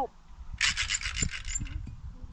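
Rubbing and scraping of the camera being handled and turned, about a second long, starting about half a second in.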